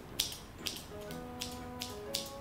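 Scissors snipping through a lifted lock of hair, about five short, sharp snips, over soft background music with held notes.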